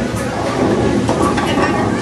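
Bowling alley din: a steady low rumble of bowling balls rolling on the lanes, with voices chattering underneath.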